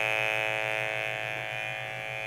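Gigahertz Solutions NFA1000 field meter's audio signal: a steady electric buzz with a high whine over a low hum, sounding the strong mains electric field of a switched-on multi-outlet power strip. It eases slightly in level in the second half.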